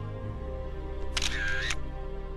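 Soft background music with held notes. A little over a second in, a short camera-shutter sound, about half a second long, sounds over it.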